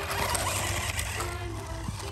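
Toy remote-control Mario Kart car running over wood chips: the whir of its small electric motor and gears, with a steady rustling hiss from the wheels on the chips.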